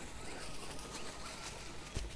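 Faint outdoor bush ambience: a low steady rumble with a few faint, thin high calls.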